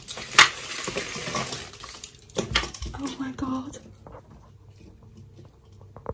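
Vertical window blinds being opened by their chain: the slats rattle and clack against each other, with a sharp click near the start and another about two and a half seconds in, then it quiets down.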